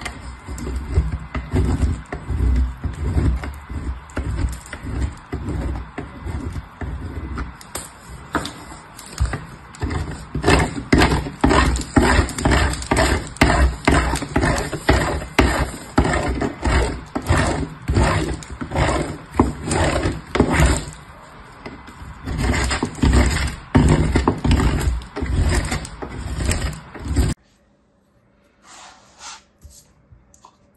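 Soap being grated on a metal box grater: a run of rhythmic rasping scrapes, about two strokes a second, that stop suddenly near the end, leaving only a few faint taps.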